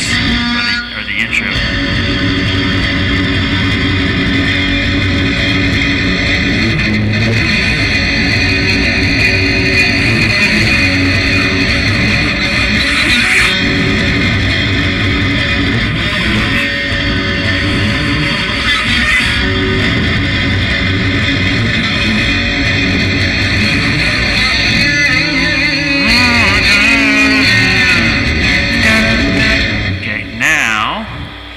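Guitar played continuously through a song, with a voice singing over it.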